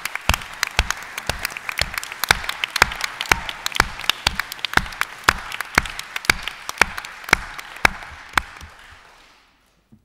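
Applause from an audience and the panel, with several loud, distinct claps close to the microphones over the crowd's clapping; it dies away about nine seconds in.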